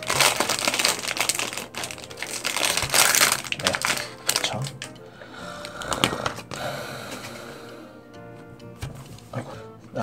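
Foil blind-bag wrapper crinkling loudly as it is handled and opened to take out a small vinyl figure, for about the first four and a half seconds, then quieter handling. Background music plays underneath.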